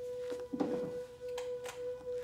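A single steady held tone, a sustained drone note, with a few soft clicks and a brief rustle about half a second in.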